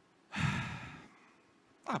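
A man sighs, a breathy exhale into a close handheld microphone that starts about a third of a second in and fades away within a second.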